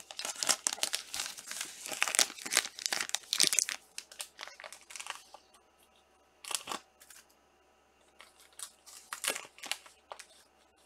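Thin plastic card sleeve and rigid plastic toploader crinkling and rustling as a trading card is handled and sleeved. The crinkling is dense and loud for the first four seconds, then thins to a few scattered rustles and clicks.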